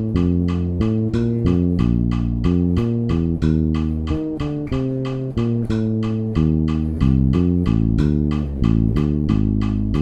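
Electric bass guitar playing a line of changing notes in 7/8 time over a steady metronome click.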